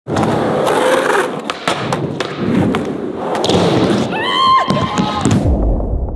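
Skateboard wheels rolling across skatepark ramps, with the board clacking and thudding several times as it hits and lands. A brief high-pitched squeal comes about four seconds in, and near the end the sound dulls to a low rumble.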